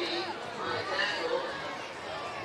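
Indistinct chatter of several people talking at once, spectators at a football game, with no words standing out.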